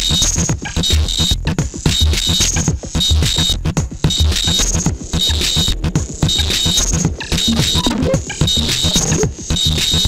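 Electronic music played on a Eurorack modular synthesizer with 808-style drum modules: a steady, repeating beat with a deep kick about once a second, layered with recurring bursts of high hiss.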